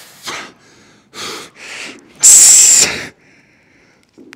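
A man's forceful breathing while he strains against a strap in a hamstring exercise: a few short breaths, then a loud, sharp hissing exhale about two seconds in.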